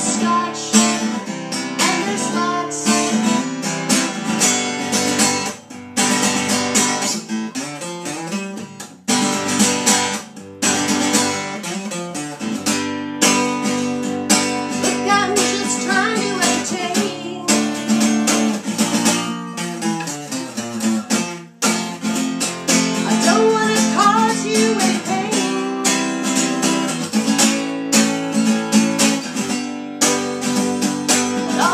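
Acoustic guitar strummed steadily, with a woman singing over it.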